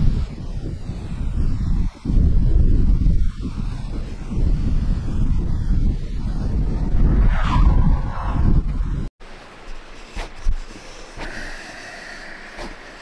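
Wind buffeting the microphone outdoors: a loud, gusty low rumble that cuts off abruptly about nine seconds in, leaving a much quieter background with a few faint clicks.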